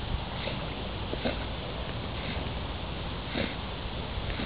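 Newfoundland dog swimming with a ball toy in its mouth, breathing hard through its nose in short breaths about once a second, over a steady low rumble and water noise.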